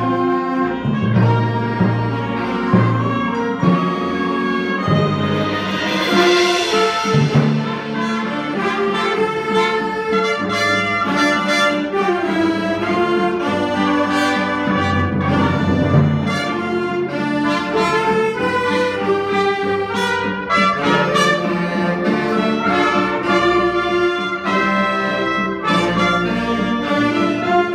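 Student band playing live, with brass to the fore over a moving bass line. A bright swell rises and fades about six seconds in, and sharp percussion hits come through in the second half.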